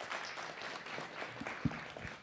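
Audience applauding, many hands clapping steadily, with a brief low thump about one and a half seconds in.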